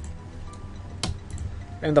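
A computer mouse clicks once sharply about a second in, with a few fainter clicks around it. A man's voice starts speaking near the end.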